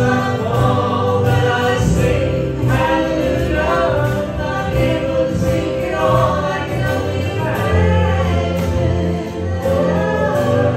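Live worship band: voices singing a slow gospel song over strummed acoustic guitars and a cajón.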